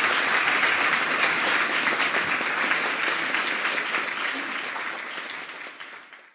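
Audience applauding, a dense patter of many hands clapping that gradually fades away over the second half.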